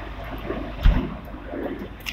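Rumbling, buffeting noise on a handheld phone microphone as it is carried along, with one dull thump a little before the middle.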